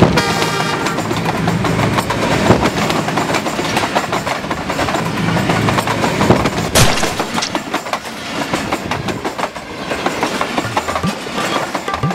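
A diesel train passing close by. Its horn sounds briefly at the start, then comes a steady loud rumble with the clatter of wheels on the rails and one sharp clack about seven seconds in.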